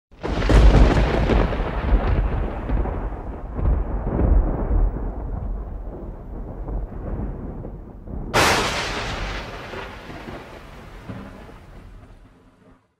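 A deep rolling rumble like thunder, loudest in the low end and slowly dying away, then a sharper crack about eight seconds in that rolls off and fades out at the end.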